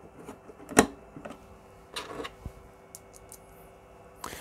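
A small bolt being screwed down by hand into a 3D-printed plastic part, with light clicks and scrapes of the driver and plastic pieces. There is one sharper click about a second in.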